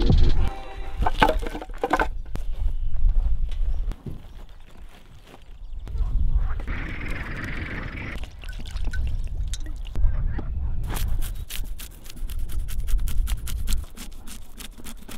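A knife scaling a large bluefish (kofana) on a wooden board: a rapid run of crisp scrapes begins about three-quarters of the way in. Before it come scattered crackles and clicks.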